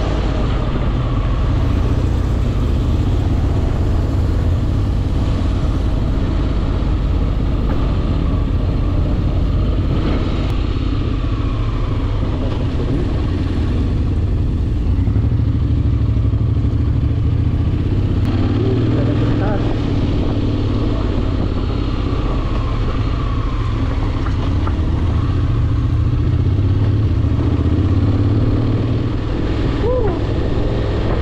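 Honda X-ADV's engine running at riding speed under steady wind rush, its pitch rising and falling a few times as the motorcycle speeds up and slows.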